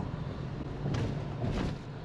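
Toyota FJ Cruiser driving on a concrete road, heard from inside the cabin: a steady low engine and road rumble, with two short noises about one and one-and-a-half seconds in.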